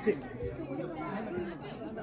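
Indistinct chatter of several people talking at a distance, no single voice standing out.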